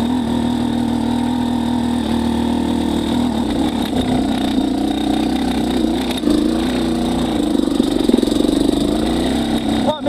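Two-stroke 250 single of a Yamaha YZ250X, fitted with an XTNG GEN3+ 38 metering-rod carburetor, lugging at very low revs in second gear up a climb with no clutch used. The engine note is steady but wavers slightly.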